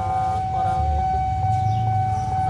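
Railway level crossing warning alarm sounding one steady high electronic tone, over a low rumble.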